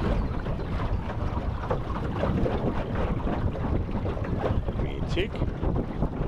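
Wind buffeting the microphone aboard a small boat under way, a steady rushing noise with an uneven low rumble.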